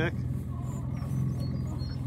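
Small boat's outboard motor idling with a steady low hum.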